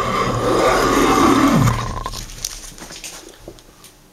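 A small hand plane shaving along the corner of a pressure-treated wood baluster: one long planing stroke that is loudest in the first two seconds, then tails off into lighter scraping, as the corner is chamfered toward an octagonal handle.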